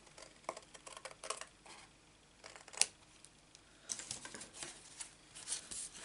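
Scissors making a few short, quiet snips trimming a thin strip of gold card, with light rustling of card being handled; the sharpest click comes about halfway through.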